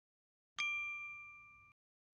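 A single bright bell-like ding sound effect, used as a transition cue between sentence cards. It strikes about half a second in and rings with a few clear tones, fading over about a second before being cut off.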